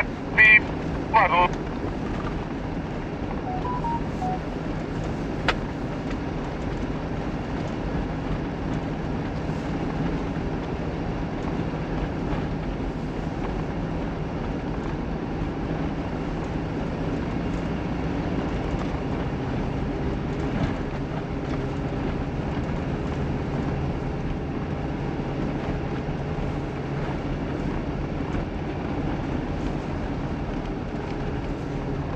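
Mitsubishi Pajero Sport's engine running steadily under way, with tyre noise on a snow-covered road, heard from inside the cabin. The engine note shifts lower about two-thirds of the way through.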